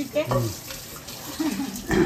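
Kitchen mixer tap running, its stream splashing into a metal pan held under it in the sink.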